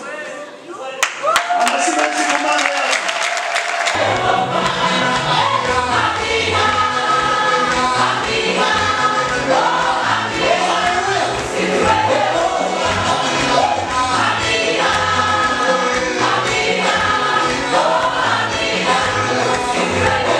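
Women's choir singing gospel music, with a pulsing bass beat that comes in about four seconds in.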